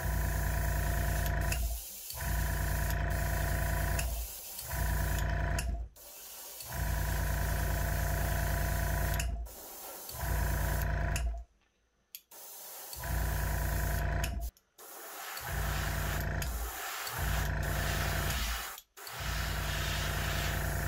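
Airbrush spraying thinned red paint, the steady hum of its small air compressor motor under the hiss of air, starting and stopping many times in stretches of about two seconds with short breaks between.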